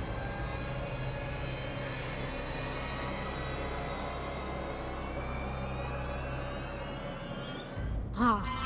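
Dramatic background score of a TV drama: a sustained low rumbling drone under layered steady tones, with a whine that slowly rises in pitch in the second half like a swelling tension riser, then cuts off suddenly just before the end.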